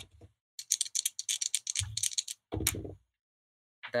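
A quick run of light, dense clicks and rattles lasting about two seconds, ending with one sharper click.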